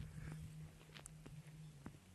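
Near-quiet background: a faint steady low hum with four soft clicks spread through it.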